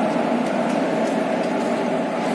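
Steady hum of a WAP-4 electric locomotive standing with its machinery running, a constant drone with one even tone in it and no change in level.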